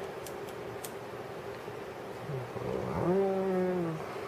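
A few light clicks of alligator clips and wires being handled, then a man's low hummed "hmm", rising and held for about a second near the end, over a faint steady hum.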